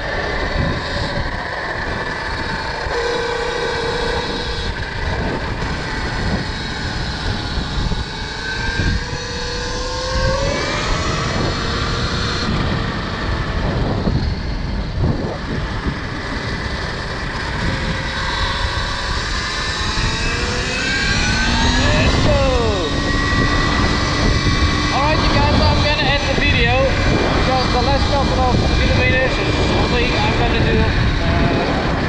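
Wind rushing over the microphone while riding a KTM Freeride E-XC electric enduro bike, with the electric motor's whine rising in pitch as the bike accelerates, about ten seconds in and again about twenty seconds in.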